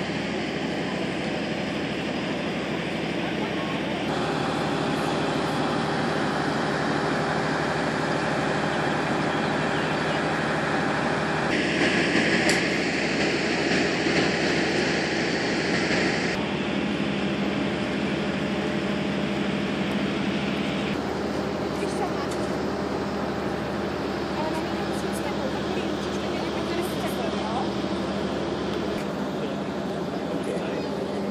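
Outdoor crowd ambience: many people talking indistinctly over a steady low hum, the sound changing abruptly several times.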